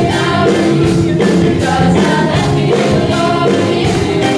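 Several vocalists singing together into microphones over a live pop band of guitar, bass and keyboards, with a steady beat.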